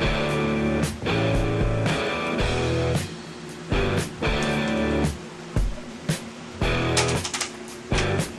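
Rock music with guitar, coming in loud blocks broken by short gaps.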